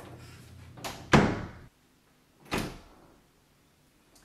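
An interior closet door being pulled shut with a thump about a second in, followed by a second, lighter knock at the door about a second and a half later.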